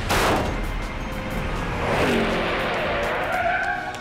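Cartoon race-car sound effects over background music: a sudden whoosh as the car shoots off, then a tyre screech that swoops down and back up in pitch as it brakes to a stop.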